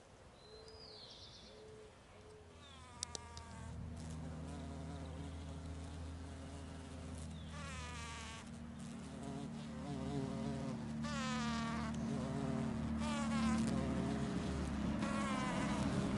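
A large black bee buzzing steadily close by among flowers, starting a few seconds in and growing louder as it nears. Birds call in the background, with a series of quick falling calls repeated every few seconds.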